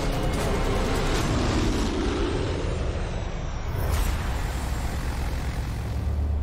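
Twin-engine turboprop aircraft flying past overhead, a loud steady rushing noise, with a dramatic music hit about four seconds in.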